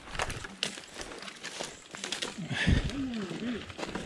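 Footsteps crunching and rustling through leaf litter and brush, with scattered knocks of handling, and a short muffled voice about two and a half seconds in.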